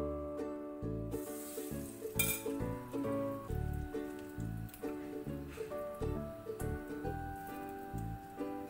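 Background music with a steady beat, over the sizzle of banana fritter batter frying in hot oil in a kadai. The sizzle grows about a second in, and there is a sharp clink about two seconds in.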